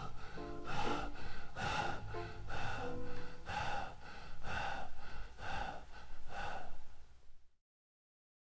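Jazz quartet recording, tenor saxophone, piano, bass and drums, playing a repeated accent roughly once a second, then fading quickly and stopping as the record ends about seven and a half seconds in.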